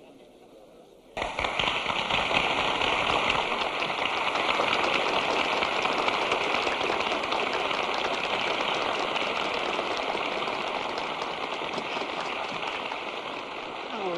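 A large concert-hall audience applauding. The applause breaks out suddenly about a second in and carries on thickly, easing slightly near the end.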